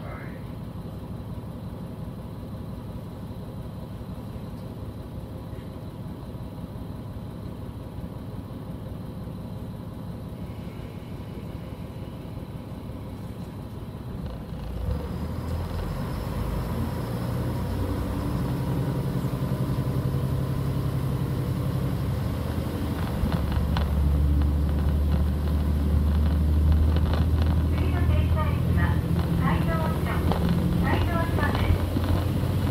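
Diesel railcar's engine idling steadily while the train stands still, heard from inside the carriage. About halfway through the engine throttles up as the train pulls away, getting louder with a rising note, then steps up in power again a few seconds later.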